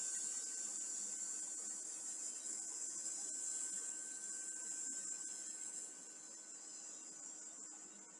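A woman's long, steady "sss" hiss breathed out through clenched teeth, a slow controlled exhale in a snake-breath exercise. It grows fainter about six seconds in as the breath runs low.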